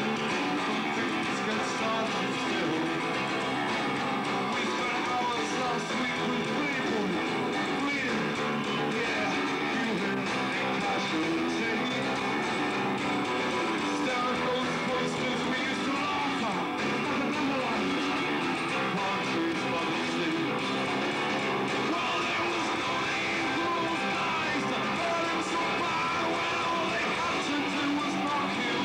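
Live rock band playing at a steady level: strummed acoustic guitar over a full band with drums, and a male singer's voice at the microphone.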